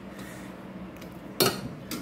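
One sharp metallic clink with a short ring about one and a half seconds in, from a screwdriver on the engine's metal throttle linkage and cable clamp, over a faint steady hum.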